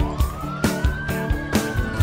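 A siren wailing, its pitch rising and then falling, over music with a steady drumbeat of about two beats a second.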